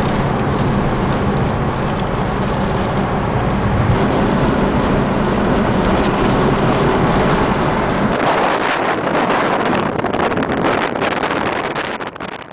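Hurricane wind and rain battering a moving car, heard from inside the cabin over the engine's steady hum. About eight seconds in it changes to gusty wind buffeting the microphone.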